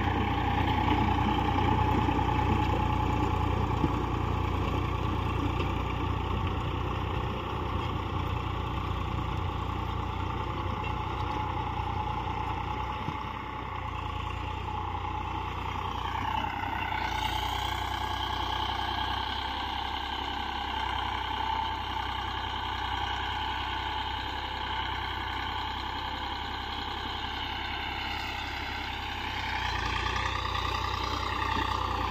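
Eicher 485 tractor's three-cylinder diesel engine running steadily under load as it drives a 7-foot Shaktiman rotavator through the soil. The sound shifts a little over halfway through, as the tractor is heard from farther off.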